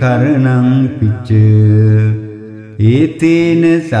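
A man chanting Pali Buddhist pirith verses in long, held melodic notes, with a short dip in level about two seconds in.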